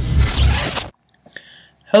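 The tail of a glitchy electronic intro sting with heavy bass, cutting off abruptly just under a second in. A faint short breathy noise follows before speech begins.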